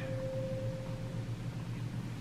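A pause without speech: a steady low background hum, with a faint thin steady tone that fades out a little past halfway.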